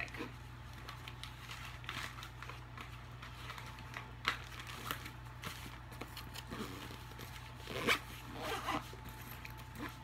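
Quiet handling of a fabric backpack as a hand works inside one of its pockets: soft rustling with a few short scrapes and clicks, the sharpest one about eight seconds in.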